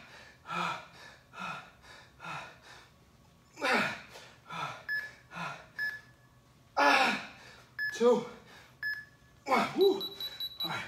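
A man's hard, voiced exhalations and grunts, about one a second and louder toward the middle and end, as he works through repeated resistance-band pullovers at the end of a set. Several short electronic beeps from an interval timer counting down the last seconds, with a longer beep at the very end.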